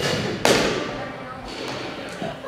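Two hard knocks about half a second apart, the second louder, each ringing on and dying away in a large echoing room.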